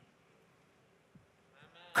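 Near silence with faint room tone through a pause in a sermon, then a man's voice starts loudly right at the end.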